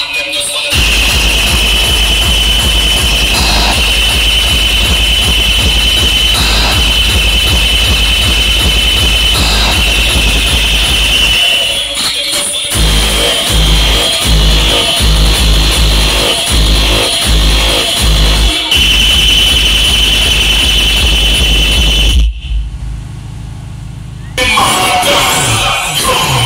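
Loud DJ dance music with heavy sub-bass played through a truck-mounted DJ speaker rig. The bass turns choppy through the middle. Near the end the music drops out for about two seconds, leaving only a low hum, then comes back in.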